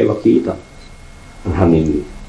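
Speech only: a man talking, with a pause of about a second in the middle.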